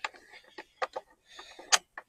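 A few sharp clicks and taps of plastic and metal parts of a hoverboard go-kart kit being handled and fitted, the loudest one near the end.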